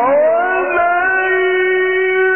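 Male Quran reciter's voice in melodic recitation, gliding up in pitch at the start and then holding one long, steady note. The recording is dull-sounding, with nothing in the upper range.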